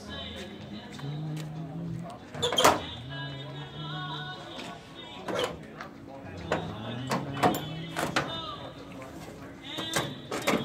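Several sharp metal clanks as the hood side panel of a 1963 Mack B-85 fire truck is unlatched and folded up, the loudest about two and a half seconds in. Steady background music plays throughout.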